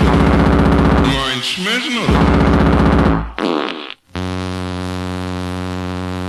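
Early hardcore (gabber) DJ mix: rapid, distorted pulsing beats with gliding, voice-like pitch sweeps. About three seconds in it breaks off briefly, and a steady buzzing synth drone takes over.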